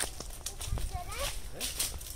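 Footsteps of several people crunching over dry mango leaves and dirt at a walking pace, with brief bits of voice between them.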